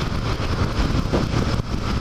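Motorcycle cruising at motorway speed: a steady engine rumble mixed with wind and road noise on the on-board camera microphone.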